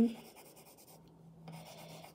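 Faint scratching of a graphite pencil held flat in a side grip, shading on paper at light, even pressure, with a short break about halfway.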